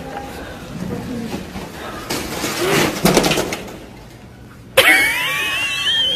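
Rustling, then about five seconds in a young child suddenly lets out a high-pitched, wavering scream.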